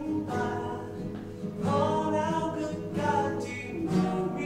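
A young female voice singing a song, accompanied by a nylon-string classical guitar.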